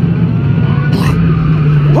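Top Thrill Dragster's hydraulic launch starting: a loud, steady low drone that rises slightly in pitch as the train begins to accelerate, with a brief hiss about a second in.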